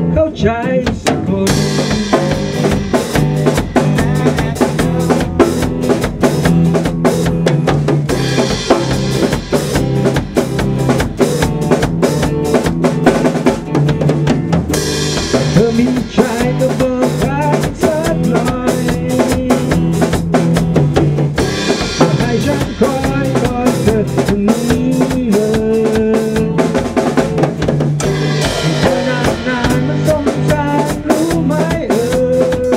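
A drum kit and an electric guitar playing a song together, with a steady drum beat and sustained guitar chords that run without a break.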